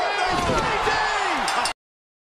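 A wrestler's body slamming onto the wrestling ring mat in a double-team move, a heavy thud about half a second in, over yelling voices. The sound cuts off abruptly shortly before the end.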